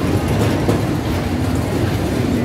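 Spinning-car fairground ride in operation: a steady low mechanical rumble of the ride's drive and its cars rolling across the platform.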